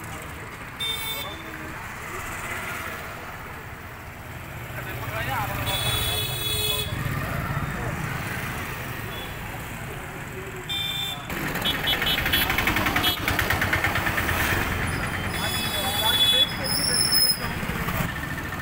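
Street traffic with motorcycles passing and vehicle horns tooting several times: short honks about a second in, around six and eleven seconds, and a cluster near the end. An engine passes close by in the middle.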